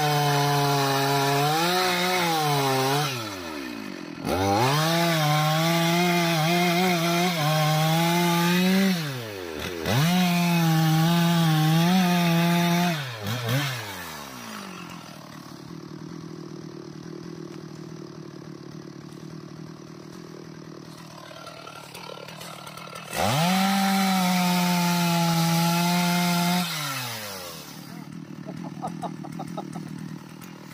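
Two-stroke chainsaw cutting into the buttress roots of an anjili (wild jack) tree. It runs at full throttle in four long bursts, each dropping back with a falling pitch to a quiet idle, with a long idle stretch in the middle.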